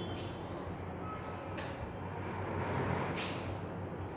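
Chalk scratching on a blackboard as a number is written, a few short scratchy strokes over a steady low hum of background noise.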